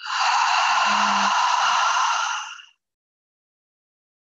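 A long audible breath out through the mouth, a sigh-like exhale lasting about two and a half seconds, with a brief low voiced hum in the middle.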